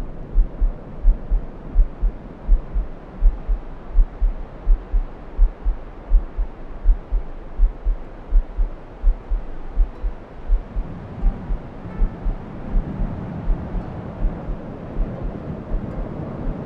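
A human heartbeat, recorded and mixed in as a sound effect: steady double thumps, lub-dub, a bit under one and a half beats a second, over a low rushing background that swells in the second half.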